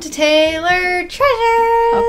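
A woman's voice singing a sing-song greeting in two notes, the second held for about a second.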